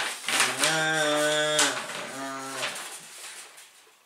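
A man's voice singing wordless, drawn-out notes, two long held notes that trail off about three seconds in, with a little rustling of paper.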